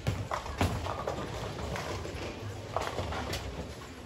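Bowling alley clatter: bowling balls and pins on the lanes making a handful of sharp, irregular knocks, the loudest just after the start and near three seconds in.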